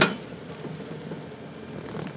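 Baumalight 1P24 PTO stump grinder's cutter wheel chewing through an ash stump and dirt, with the John Deere 2038R running under load, a steady rough grinding noise. A sharp crack comes right at the start.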